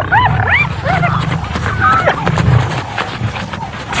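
Spotted hyenas calling in a rapid, frenzied series of short yelps that rise and fall in pitch, over a low rumble.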